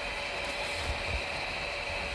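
Kingroon KP3S 3D printer running mid-print, with its replacement cooling fans making a steady whirr and a thin, high whine.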